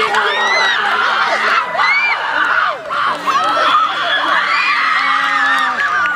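Many children's and teenagers' voices shouting and cheering over one another during a tug-of-war pull.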